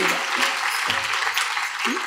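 Audience applauding steadily, a dense even clapping.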